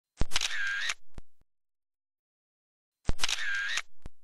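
Camera shutter sound effect, played twice about three seconds apart: each time a sharp click, a short whirring burst, then a lighter click.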